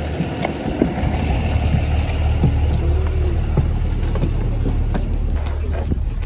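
School bus engine idling with a steady low rumble, with a few light knocks over it.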